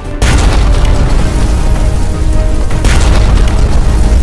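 A loud explosion boom breaks in about a quarter of a second in, with deep rumble that carries on, and a second blast a little under three seconds in, all over dramatic background music.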